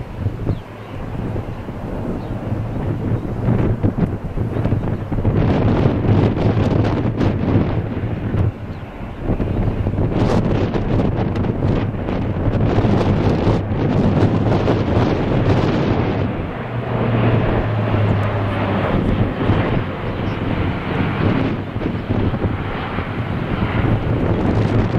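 Airbus A400M's four TP400 turboprop engines droning as the aircraft passes overhead, a steady low propeller hum throughout. Heavy gusts of wind noise on the microphone swell in over it a few seconds in.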